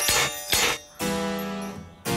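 Cartoon magic-spell sound effect: two short sparkly swishes, then a plucked, guitar-like chord that rings and fades. It marks a spell taking effect, putting bars across a window.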